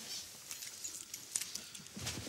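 Faint handling noise: soft rustling with a few light clicks as two small metal keys are held up and brought together.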